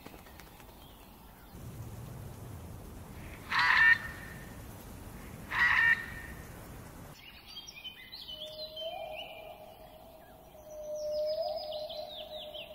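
Two short, harsh rattling calls about two seconds apart over a low background rumble, typical of a helmeted guineafowl. After a sudden change of background, small birds chirp and twitter over a steady mid-pitched whistle, with a run of quick descending chirps near the end.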